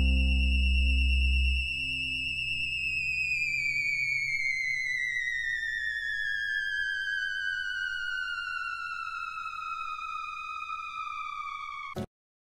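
Close of a progressive rock track: a low sustained band chord stops about a second and a half in, leaving a single high synthesizer tone. The tone holds, then slides slowly and steadily down in pitch for most of the remaining time before cutting off suddenly.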